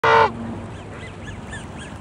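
Canada goose giving one short, loud honk right at the start, its pitch dropping as it ends. Faint high chirps repeat about four times a second behind it.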